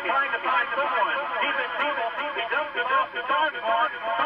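Speech only: a man's voice talking steadily, in the manner of football play-by-play commentary, on a narrow-band sound track.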